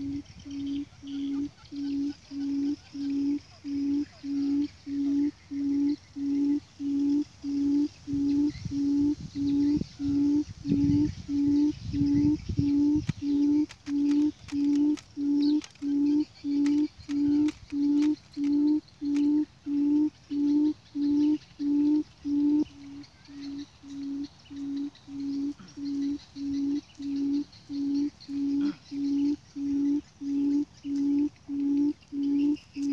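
Buttonquail call played on a loop as a trap lure: a low hoot repeated with machine-like evenness, about three every two seconds. A few faint clicks fall in the middle.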